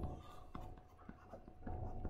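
Faint light taps and scratches of a stylus on a tablet screen while handwriting a word.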